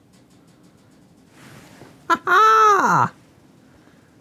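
A man's drawn-out wordless exclamation of delight, just under a second long, its pitch rising and then falling away. A breath comes before it, over quiet room background.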